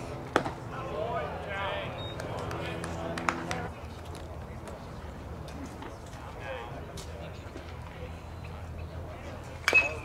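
A pitched baseball pops sharply into the catcher's mitt about half a second in, with voices chattering in the background. Near the end a loud metal bat pings as the batter swings and hits the ball.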